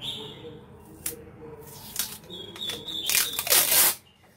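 Clear packing tape pulled off its roll in several rasping tears, one with a high squeal, the longest and loudest near the end.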